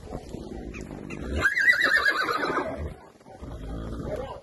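A heavy draught crossbred horse whinnying once: a loud, wavering call about a second and a half long that starts a little over a second in and drops slightly in pitch toward its end.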